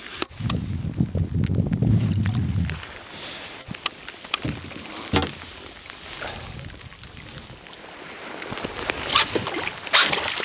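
Knocks and bumps on a small wooden rowboat as a hooked fish is played to the boat side, with a low rumble over the first few seconds. Near the end comes splashing from the fish thrashing at the surface beside the hull.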